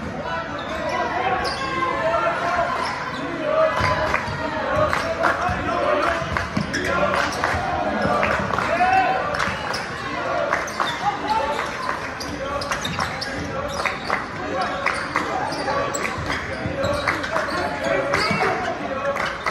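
Basketball dribbled and bouncing on a hardwood gym floor during play, a string of sharp bounces that echo in the hall, over the steady chatter of spectators and players.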